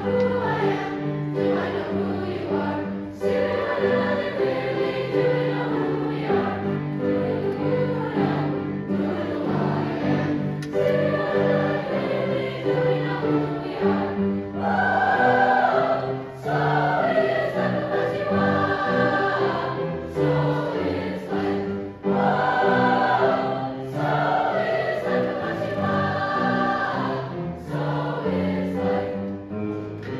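Youth choir singing a feel-good Jamaican-style song in parts, accompanied by piano, the voices carrying on in continuous phrases with short breaths between them.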